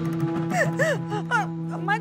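A woman crying out loud, with gasping sobs and wailing rises and falls of pitch, over background music of held, sustained notes.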